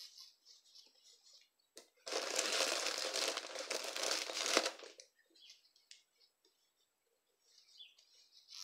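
Crinkling and rustling of polyester fiber fill being handled and stuffed into a crochet toy, in one stretch starting about two seconds in and lasting nearly three seconds. Faint soft handling sounds come before and after it.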